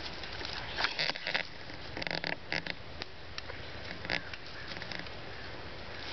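Irregular rustling and short scrapes and crackles of cord and sticks being handled as tarred bank line is wrapped and pulled tight around a stick joint to lash it.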